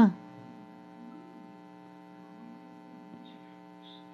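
A faint, steady electrical hum made of several fixed tones, unchanging throughout.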